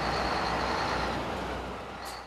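Scania heavy truck running as it rolls past at low speed: a steady engine rumble and road noise with a thin high whine, easing off near the end.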